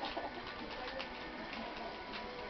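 Wrapping paper crinkling now and then as a gift is handled and unwrapped, over a steady low hum of room equipment.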